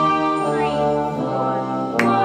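Band accompaniment music: sustained brass-led chords held and changing at a slow, steady pace.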